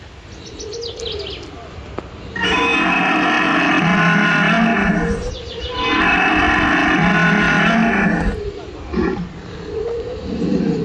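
Two long, low recorded dinosaur roars played from an animatronic dinosaur display's loudspeakers. Each lasts close to three seconds; the first starts a couple of seconds in and the second follows after a short gap.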